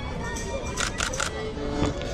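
Camera handling noise: a quick run of scraping rubs against the microphone about a second in, over background music and voices.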